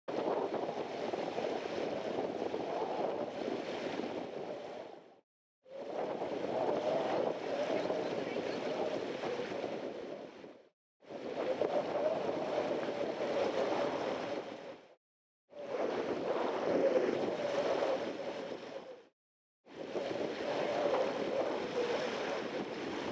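Wind buffeting the camera microphone, with rushing water, during kitesurfing on the sea. The noise comes in stretches of four to five seconds, each fading out into a short silence before the next.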